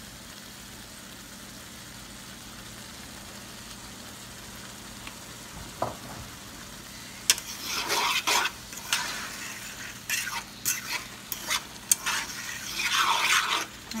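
Ackee and saltfish being stirred in a frying pan: a quiet steady frying hiss for about the first half, then from about seven seconds in, repeated irregular scraping and clinks of the stirring utensil against the pan.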